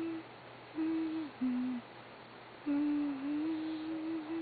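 Sleeping dog snoring with a whistling, hum-like tone: a few drawn-out notes, one dropping lower, then a longer note of about two seconds near the end.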